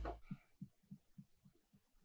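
Background music cuts off right at the start, leaving faint, soft low thuds at an even pace of about three a second, a heartbeat-like throb.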